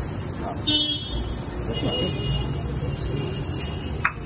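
A metal bell struck about a second in, ringing briefly with several high tones, then a thinner steady high ring through the second half, over crowd chatter.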